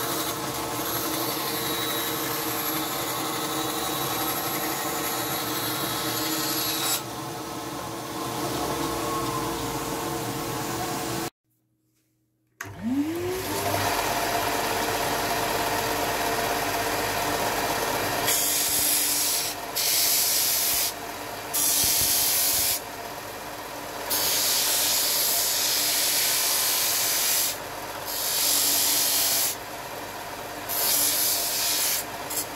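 Einhell TC-SB 200/1 bench band saw running and cutting through a thin wooden board, quieter from about seven seconds in. After an abrupt break, a combination belt/disc sander spins up with a rising whine and runs. From a little past halfway, a board's edge is pressed against its sanding disc in several hissing bursts with short pauses between them.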